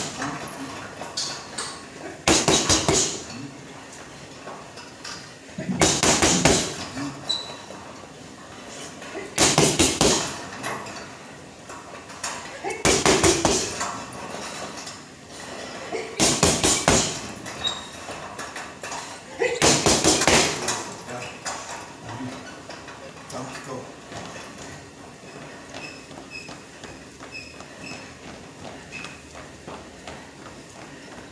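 Boxing gloves punching a hanging heavy bag in quick flurries of several blows, one flurry every three to four seconds, six in all. After about twenty seconds the punching stops and only quieter sounds remain.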